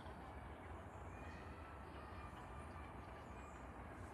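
Faint, steady low rumble of a distant narrow-gauge steam train approaching along the track, heard under quiet outdoor ambience.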